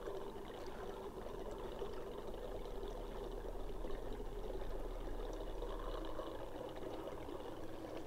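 Petrol pouring steadily from an upturned 3-litre canister through a self-venting safety pour spout into the fuel tank of a Black+Decker BXGNi2200E inverter generator.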